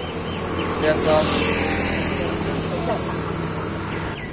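A road vehicle passing close by: its engine and tyre noise swell about a second in and fade away, over steady traffic hum and voices in the background.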